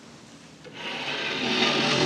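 Papers being gathered and rubbed on a lectern close to its microphone: a rough rustling that starts under a second in and grows louder.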